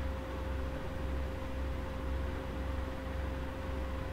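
Steady low hum and hiss with a faint steady high tone running under it: the background noise of the recording setup, with no distinct event.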